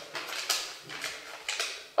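A few faint, short clicks and rustles of small handling noise, a slip of paper handled in the hands, against quiet room tone.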